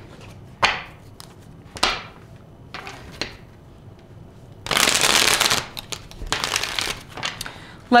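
Tarot cards being handled and shuffled: a few short rustles as the deck is gathered, then two longer bursts of shuffling in the second half.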